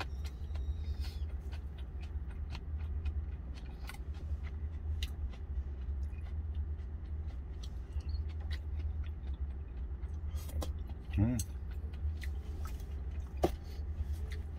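Close chewing and small clicks of wooden chopsticks against a stainless steel bowl, over the steady low hum of an idling truck engine heard inside the cab. A short hummed "mm" comes about eleven seconds in.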